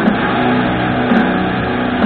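Solid-body electric guitar played loud through an amplifier, holding long sustained notes.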